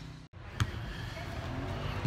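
A brief dropout at an edit, then a steady low background rumble with a single sharp knock about half a second in.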